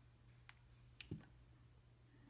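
Two faint clicks about half a second apart, from the button of a handheld endoscope's power module being pressed to work its light.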